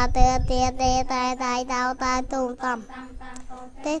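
A class of young children chanting Khmer spelling syllables in unison on one steady pitch, about four syllables a second. The chant thins out and fades about three seconds in.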